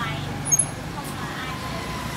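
Steady hum of road traffic with faint voices in the background, and a short sharp sound about half a second in.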